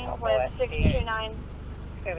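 Brief stretches of talking over a steady low hum.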